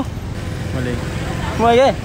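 Steady low rumble of street traffic, with a voice speaking briefly near the end.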